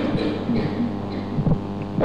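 Steady electrical mains hum, with a few faint, brief voice sounds over it.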